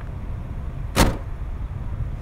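A single sharp knock about a second in, from the plastic door of a kid's ride-on police car being shut as the driver climbs out, over a low steady rumble of wind on the microphone.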